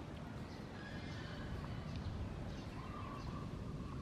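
A few faint, short animal calls, each held at a steady pitch for about half a second, over a steady low rumble of background noise.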